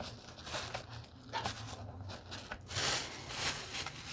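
Thin plastic shopping bag rustling and crinkling in irregular bursts as items are handled and pulled out of it, loudest about three seconds in, over a faint steady low hum.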